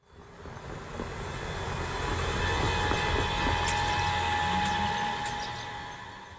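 A vehicle passing by: a steady rumble with a faint high whine that swells over the first couple of seconds, holds, then fades away near the end.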